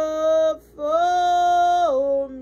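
A woman singing a slow worship song. She holds a long note, breaks briefly a little over half a second in, then holds a slightly higher note that drops in pitch near the end.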